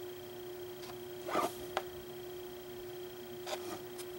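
Soft strokes of a small flat paintbrush on the painting surface: a short scratchy swish about a second and a half in, then a few light ticks. A steady electrical hum runs underneath.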